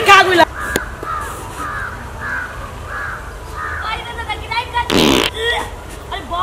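A fart, heard as a short loud blat about five seconds in that slides steeply down in pitch.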